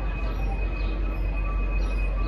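V/Line N class diesel-electric locomotive running as it approaches along the platform road, a steady low rumble. A thin high whine and short high chirps about twice a second sit above it.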